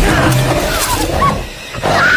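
Dinosaur screeching: several short squealing calls that rise and fall in pitch over a low rumble, with a brief drop in level about one and a half seconds in.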